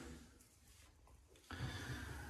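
Near silence: quiet room tone in a small room, with a soft breath starting about one and a half seconds in.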